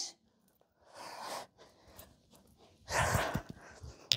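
A woman breathing hard during exercise: two breaths, a soft one about a second in and a louder one about three seconds in.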